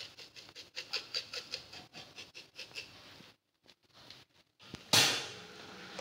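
Salt being shaken from a shaker into a cooking pot: quick rattling shakes, about four or five a second, for roughly three seconds. After a short pause, a sudden brief burst of noise comes near the end.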